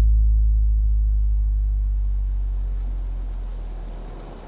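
A deep, steady bass tone with a few low overtones, fading slowly away: the ringing tail of the hip-hop track's last bass note after the rest of the music has cut off.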